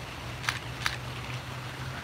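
Two DSLR shutter clicks in quick succession, the first about half a second in, over a steady low background hum.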